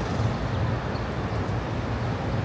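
City street traffic noise: a steady low rumble of vehicles with an even wash of street noise over it.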